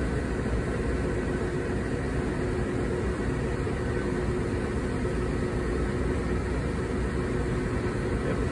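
Steady drone of running machinery: a low rumble with a faint constant hum.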